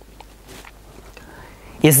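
Faint background noise during a pause in speech. A man starts speaking near the end.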